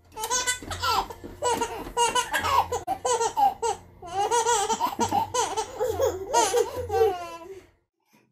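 A small child laughing in repeated high-pitched peals, stopping shortly before the end.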